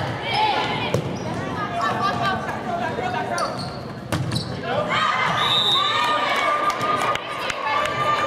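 Indoor volleyball rally in a gymnasium: sharp smacks of hands striking the ball about a second in and again around three and a half to four seconds, with players calling out. From about five seconds on, players and spectators shout and cheer as the point is won.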